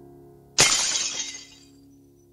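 A sudden crash about half a second in, bright and hissy, dying away within a second. Under it, the last of a sustained musical chord fades out.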